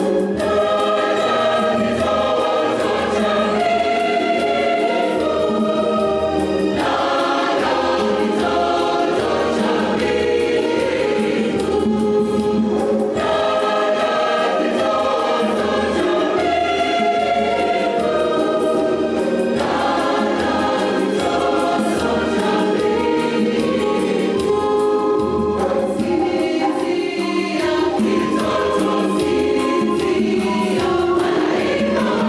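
Church choir singing a Christmas carol together in several voice parts, phrase after phrase with brief breaths between lines.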